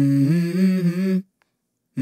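A voice humming a melody in held notes that step up and down, breaking off just over a second in; after a short silence the next hummed phrase begins near the end.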